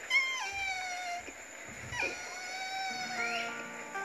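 A man imitating a baby three-toed sloth's call: two high, drawn-out squeaky 'eee' cries, each a second or more long. The first drops in pitch partway, and the second starts about two seconds in. Background music sits underneath.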